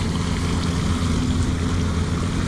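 Fountain water splashing steadily into its basin, with a steady low hum underneath.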